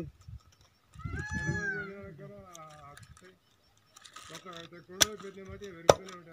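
A knife blade chopping through a fleshy dragon fruit stem against a sack on the ground: two sharp chops near the end, about a second apart, cutting the stem into planting cuttings.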